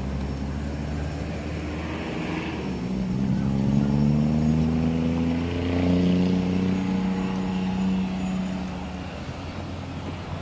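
Road traffic: a motor vehicle's engine climbing in pitch as it accelerates past, loudest a few seconds in and fading near the end, over a steady low rumble.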